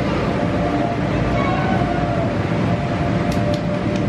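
Steady drone of the electric air blowers that keep the inflatable bounce houses up, a low rumble with a faint hum, with distant children's voices faintly in the background.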